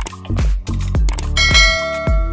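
Upbeat outro music with a steady beat, joined about one and a half seconds in by a ringing bell chime: the notification-bell sound effect of a subscribe animation.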